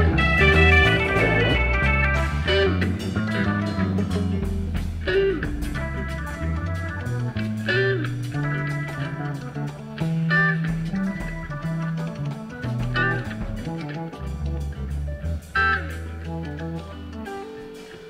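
Live psychedelic rock band playing an instrumental jam: electric guitar lines over bass guitar, organ and drums, growing gradually quieter toward the end.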